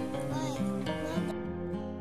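Background music led by an acoustic guitar, its notes changing every half second or so.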